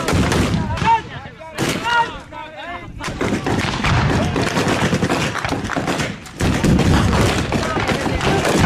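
Rifle gunfire, many sharp shots in quick succession, with men shouting between about one and three seconds in. The firing turns dense from about three seconds, dips briefly after six seconds and resumes.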